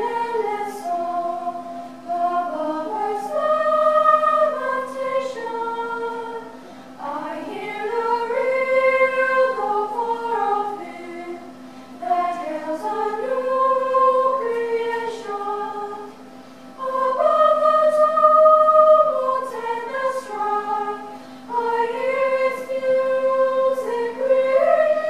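Treble choir of young women's voices singing, in phrases that swell and then dip every four to five seconds.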